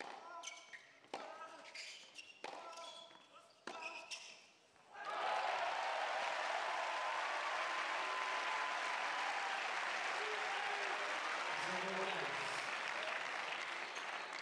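Tennis rally on an indoor hard court: racket strikes on the ball about once a second, with shoes squeaking between shots. About five seconds in, the crowd breaks into loud, steady applause that runs on.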